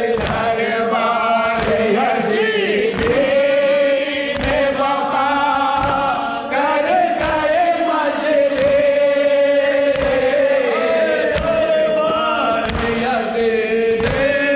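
Group of men chanting a noha in unison behind a lead reciter, keeping time with rhythmic chest-beating (matam): a sharp slap of hands on chests about every second and a half under the chant.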